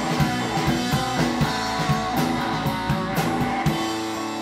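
Live rock band playing: distorted electric guitar, electric bass and drum kit keeping a steady beat. Shortly before the end the drums stop and a held chord rings on.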